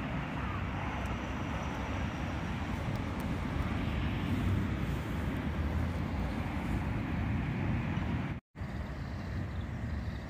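Steady outdoor background rumble, with a brief cut to silence about eight and a half seconds in.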